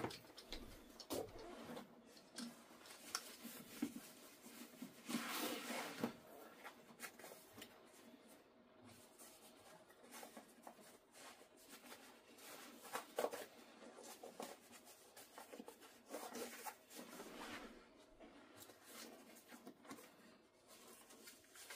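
Faint handling noise of a loaded soft carry case being put on as a backpack: fabric rustling and straps being pulled and adjusted, with scattered small clicks and knocks.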